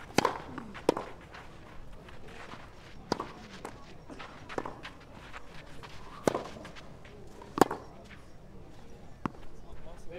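Tennis rally on a clay court: a tennis ball being struck by rackets and bouncing, heard as sharp pops at irregular intervals of about half a second to two seconds, the loudest a little after the start, just before a second in, and about three-quarters of the way through.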